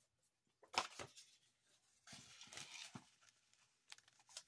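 Foil Pokémon booster pack wrapper being handled: two quick sharp rustles about a second in, then about a second of crinkling as it is picked up.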